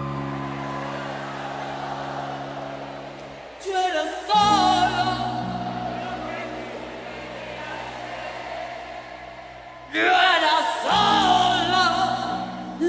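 A recorded song: held chords under a sung melody, with a vocal phrase carrying a wavering vibrato about four seconds in and another, louder one near the end.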